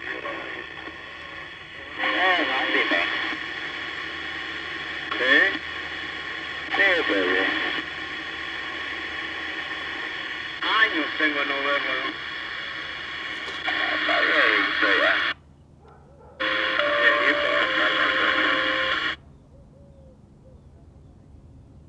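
Vintage EF Johnson Messenger 123 CB radio receiving: other operators' voices come through its speaker, thin and narrow, over a steady static hiss in several transmissions, with a brief drop-out after about 15 seconds, and the signal cuts off abruptly near the end.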